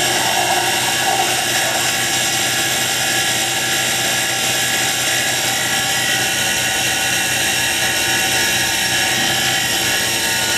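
Small wood lathe running steadily, a continuous even whine, while a spinning bocote dart barrel is sanded by hand.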